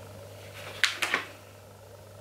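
Two or three short, sharp handling noises about a second in, as a soft Greenies dental chew and its plastic pouch are handled, over a low steady hum.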